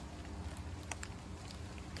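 Small backpacking gas stove being twisted onto its fuel canister: a few faint, short clicks over a steady low background rumble.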